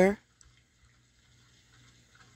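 A speaking voice finishing a word, then a pause of near silence with only a faint steady low hum.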